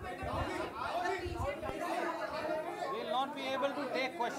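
Chatter of several voices talking over one another, quieter and off-microphone.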